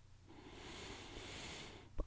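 A woman's slow, faint in-breath, lasting about a second and a half, as she inhales on a yoga breathing cue.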